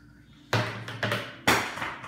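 A hard plastic cup holder thrown from a high chair, clattering as it lands: one hit about half a second in and a louder one about a second later.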